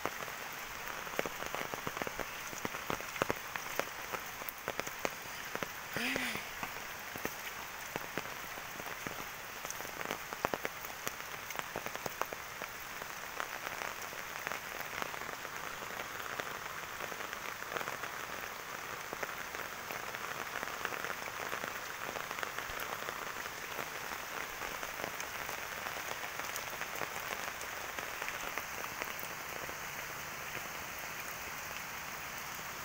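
Steady rain falling on leaves and wet ground, with scattered close drop taps.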